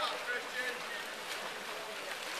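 Water splashing from water polo players swimming, with short distant shouts of voices over it.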